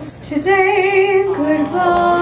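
A soprano singing, starting a held note with vibrato about half a second in and moving to a higher sustained note near the end, over a steady held piano accompaniment.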